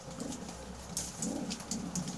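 Domestic pigeons cooing, low warbling coos shortly after the start and again in the second half, over sharp ticks of beaks pecking feed on a concrete floor.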